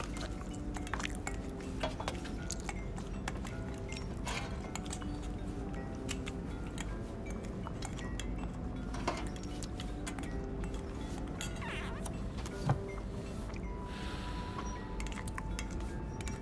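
Spoons clinking against metal bowls and mugs during a meal, scattered sharp clinks with one louder knock near the end, over quiet background music.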